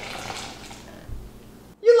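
Water poured in a thin stream from a measuring cup held high into a plastic mixing bowl: a steady splashing that fades out about a second in.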